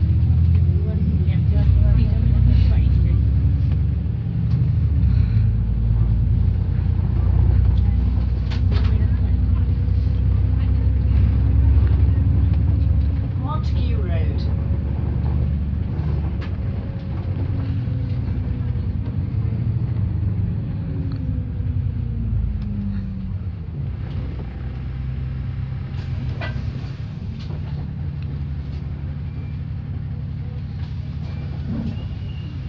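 Double-decker bus heard from the upper deck: a steady low rumble with a drivetrain whine that rises and falls in pitch as the bus speeds up and slows down. About two-thirds of the way through the whine falls away and the sound grows quieter as the bus slows, with a few short rattles or knocks along the way.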